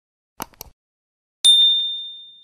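Animation sound effects: a mouse-click sound, two quick clicks about half a second in, then a bright notification-bell ding about a second and a half in that rings on and fades.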